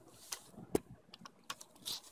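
Handling noise from a micro-USB cable and plug at a tablet's port: a few short plastic clicks and light scrapes, the loudest about three quarters of a second in.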